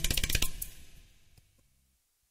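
The end of an acoustic Afro-jazz song: a last percussion hit with a quick rattle rings out and fades away within about a second, leaving near silence.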